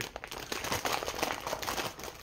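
A thin clear plastic sandwich bag crinkling and rustling as a bánh mì is pulled out of it by hand.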